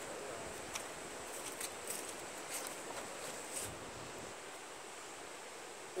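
Steady, quiet outdoor background hiss in a wooded clearing, with a few faint ticks in the first few seconds.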